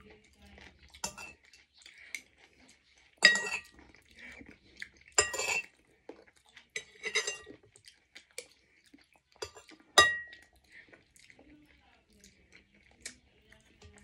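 Metal spoon and fork clinking and scraping against a ceramic soup bowl and plate during a meal. There are several sharp clinks with a brief ring, the loudest about three seconds in and at ten seconds.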